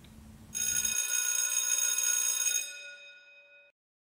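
A bell-like ringing tone of several steady high pitches sounding together. It starts about half a second in, holds for about two seconds, then fades out.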